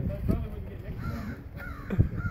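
A bird calling a few times in short arched calls, about a second in and again near the end, over a low rumble.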